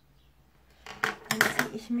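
Makeup brush and cosmetics being put down and picked up on a hard surface: a quick run of clicks and knocks starting about a second in.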